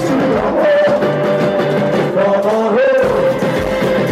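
Live band music: acoustic guitar and saxophone with several voices singing along, long held notes running through it.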